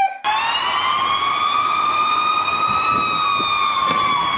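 A single long siren-like wail, one steady pitch slowly rising and then easing back down, running for about four seconds over rough background noise.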